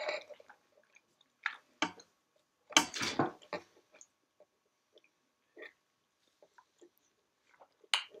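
Mostly quiet room with a few short, scattered noises close to the microphone, small clicks and rustles, with a louder cluster about three seconds in.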